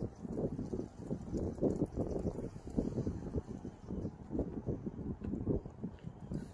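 Wind buffeting the microphone in irregular gusts.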